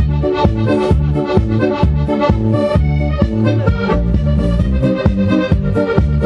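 Live dance-band music led by a piano accordion, played over a steady bass beat.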